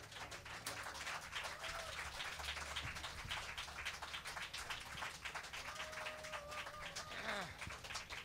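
Small club audience clapping, scattered and faint, at the end of a set, with a few faint voices near the end.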